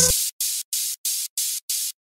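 The beat stops just after the start, leaving a hiss of white noise gated into short, even pulses, five of them at about three a second: a stuttering static effect closing out the remix.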